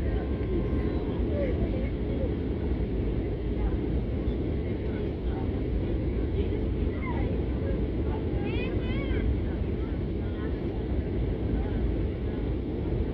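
Steady engine and airflow noise of an airliner on approach for landing, heard inside the passenger cabin, with faint voices of other passengers over it.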